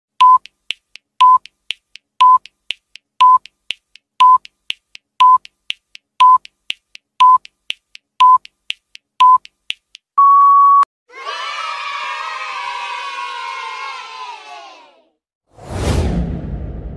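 Quiz countdown timer sound effect: a short beep once a second for ten seconds with faint ticks between them, ending in one longer, slightly higher beep. A canned effect of a crowd of children cheering follows for about four seconds, and a short whoosh comes at the very end.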